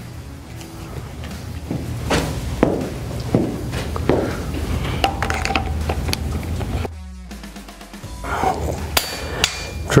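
Scattered metallic knocks and clunks of tools being handled as a cordless drill is fitted onto the pipe-severing lathe's drive, over background music.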